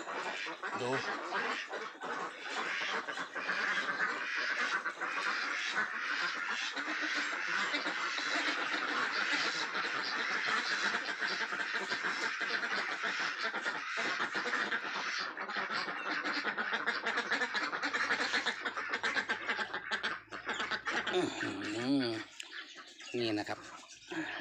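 A large flock of white domestic ducks quacking together in a dense, continuous chorus that thins out near the end.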